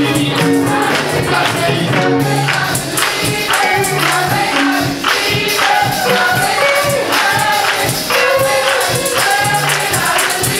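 Gospel choir of women's voices singing together, with percussion keeping a steady beat.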